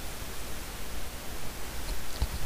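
Steady hiss and low hum of a recording's background noise, with no speech.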